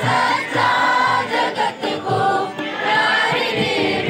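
A group of students singing a Hindi devotional prayer song together, with a dholak drum keeping a steady beat underneath.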